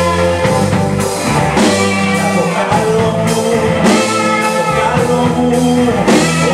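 A live rock band playing, with electric guitar and drum kit over bass and keyboards.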